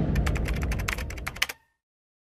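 Keyboard typing sound effect: a quick run of sharp clicks over a fading low rumble, cutting off abruptly about one and a half seconds in.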